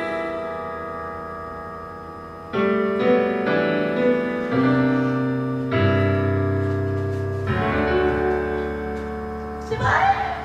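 Karaoke backing track of a piano ballad playing sustained piano chords with no singing. A held chord fades over the first couple of seconds, then a new chord sounds about every second. Shouting voices come in at the very end.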